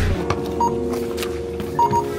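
Background music: the bass of the preceding song drops out and soft sustained chord tones carry on, shifting near the end, with a short high beep a little over half a second in and two more near the end.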